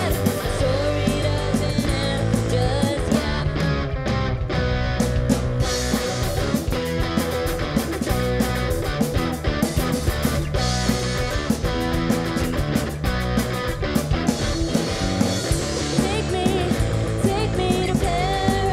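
A rock band playing live: electric guitar, bass guitar and a drum kit, with drum hits keeping a steady beat under sustained guitar notes.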